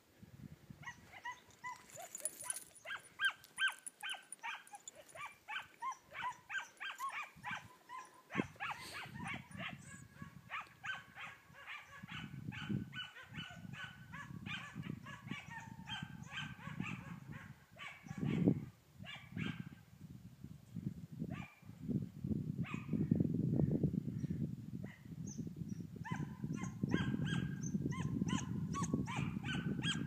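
A pack of scent hounds baying and yelping fast and in overlapping calls, giving tongue while chasing a hare. A low rumble builds underneath from about eight seconds in.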